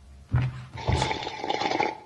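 Recorded sound effect played over the show's speakers: a knock, then about a second of loud rushing, water-like noise with a steady whistling tone, cut off near the end.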